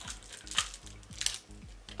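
A plastic sweet wrapper crinkling in short bursts as it is handled and pulled at, over quiet background music with a steady beat.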